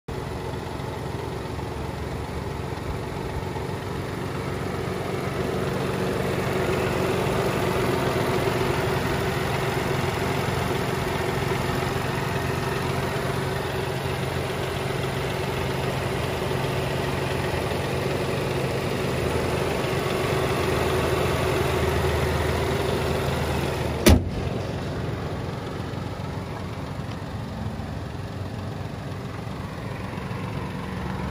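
A 2019 Mini Cooper's 1.5-litre turbocharged three-cylinder engine idling steadily with the bonnet open. Late on, the bonnet is shut with a single sharp bang, and after that the idle sounds more muffled.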